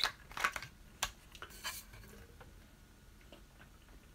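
A person taking a sip of water: a few short knocks and sipping noises from the drink being handled in the first two seconds, then faint room tone.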